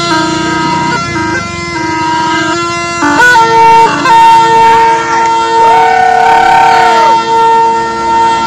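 Tarpa, the Warli/Adivasi wind instrument made from a long dried bottle gourd with bamboo pipes, played without a break: a steady low drone under a melody that steps between notes and bends in pitch. It grows louder about three seconds in.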